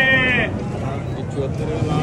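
An auctioneer's drawn-out, sing-song price call, held high and ending about half a second in, followed by the chatter of a crowd of buyers.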